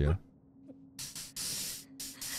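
Three short hissing breaths in quick succession: a person breathing hard through the teeth, over a faint steady hum.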